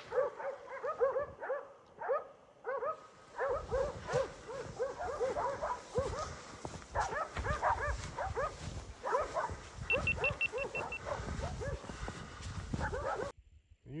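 A large pack of stray dogs barking and yelping in many overlapping voices, baying at a wild boar they have surrounded.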